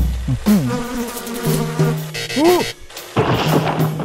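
Comic transition sound effects: a laugh at the start, then a fly-like buzzing and swooping pitched sounds that rise and fall.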